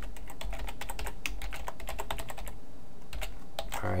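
Typing on a computer keyboard: a fast run of keystrokes for about two and a half seconds, then a short pause and a few more keystrokes.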